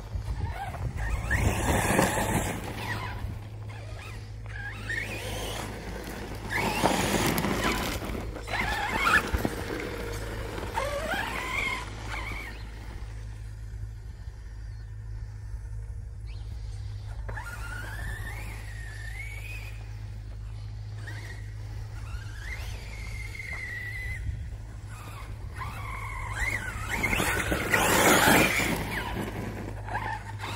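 Brushless electric motor of a 1/8 RC monster truck (Spektrum Firma 4074 2050Kv) whining up and down in pitch as it accelerates and brakes in repeated runs, with tyres scuffing over gravel and grass. The motor is loudest in several surges and near the end, and quieter for a few seconds in the middle.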